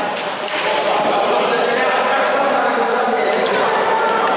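Table tennis rally: the ball knocking off bats and table, with more ball knocks from other tables echoing in a large hall.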